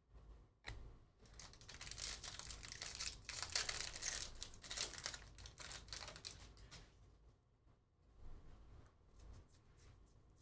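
Foil wrapper of a Panini Prizm trading-card pack torn open and crinkled, from about a second in until about seven seconds in. After that come fainter scattered ticks as the cards are handled.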